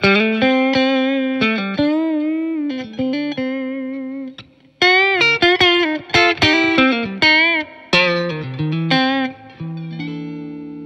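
Caldwell Closet Classic S-style electric guitar played on its middle single-coil pickup (Lindy Fralin Vintage Hot): picked single-note phrases with vibrato, a brief pause a little before halfway, then another run of notes.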